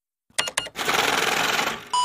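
Produced transition sound effect: a few sharp clicks, then about a second of rapid mechanical clatter, with a bell tone starting at the very end.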